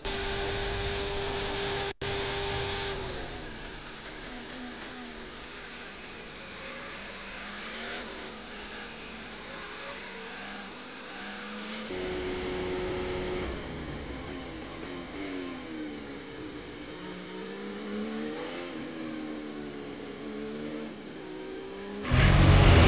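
Onboard engine sound of Formula 1 cars at race speed, turbocharged V6 hybrid power units: the engine note holds steady, then repeatedly climbs and drops through gear changes and corners. About halfway through, the sound switches from a Ferrari's onboard to a McLaren's, with the same steady note and then rising and falling revs.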